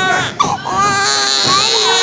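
A high-pitched human voice crying out in long, wavering calls, with a short sharp knock about half a second in.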